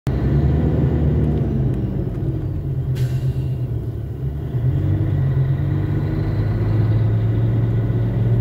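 Vehicle engine droning steadily with road noise, heard from inside a moving cab. A brief hiss comes about three seconds in.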